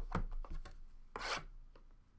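A shrink-wrapped trading-card box is handled, with a few light knocks and scrapes. Just after a second in, a blade slits the plastic wrap with a louder rasping scrape.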